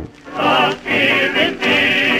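Background music with a choir singing sustained, wavering notes.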